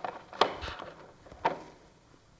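A few short, light knocks and clicks of small items being handled on a work table, the sharpest about half a second in and another about a second and a half in.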